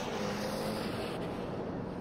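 Ferrari Challenge Evo race car's twin-turbo V8 engine running at steady revs, heard with wind and road noise.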